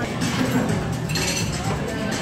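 Dining-room background: music playing under the clink of tableware, with one brighter clink a little over a second in.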